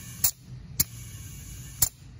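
Three sharp clicks from a digital tire inflator gauge being worked as air is pulsed into a tire, over a low steady hum.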